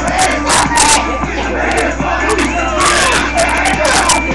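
Several young voices shouting and yelling over one another during rough play-wrestling, with scattered knocks and thumps of bodies, and rap music playing underneath.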